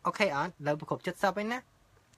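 Speech only: a man talking, breaking off after about a second and a half.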